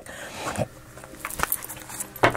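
Faint rustling with a few light clicks and taps of tarot cards being handled as a deck is picked up and set out.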